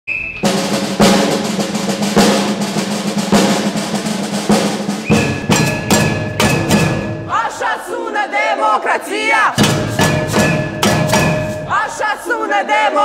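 Snare drum played with rolls and rapid strokes, together with an empty plastic water-cooler jug and an aluminium pot beaten as drums. From about seven seconds in, several voices shout over the drumming.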